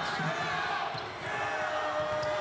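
Basketball being dribbled on a hardwood court in a large arena, over a general hall din. A steady tone comes in about a second and a half in.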